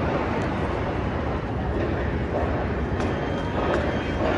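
Steady downtown city background noise: a continuous low traffic rumble, with a few faint ticks about three seconds in.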